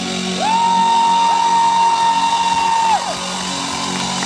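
Ring-out at the end of a live rock song, with a single long high whoop from the audience that slides up, holds one pitch for about two and a half seconds, and drops away.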